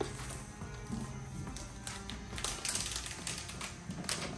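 Light background music, with short crinkling and tapping sounds of the protective wrap being peeled off a new MacBook Air, mostly in the second half.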